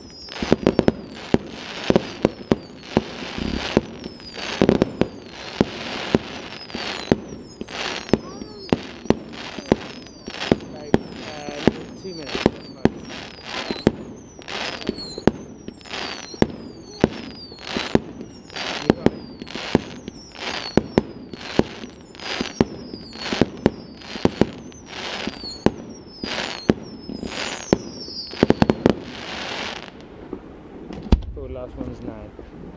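Fireworks display: a steady barrage of sharp bangs, about two a second, with deeper booms among them. After several seconds, many bangs come with a high whistle that falls in pitch.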